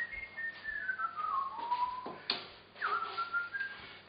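A person whistling a tune: a run of notes stepping downward, then a short second phrase, with a couple of light knocks.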